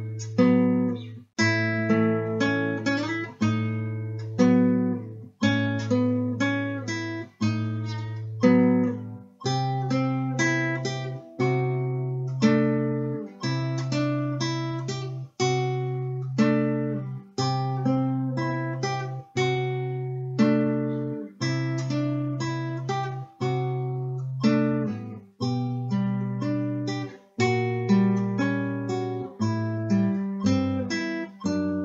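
Classical guitar played fingerstyle at a slow tempo of 60, with a bass note plucked about every two seconds under higher chord notes. The bass steps up about nine seconds in and drops back down near the end.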